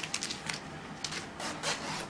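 Rustling of a fabric jumper and paper in a series of short swishes as the jumper is handled and lifted up, with the loudest swish about one and a half seconds in.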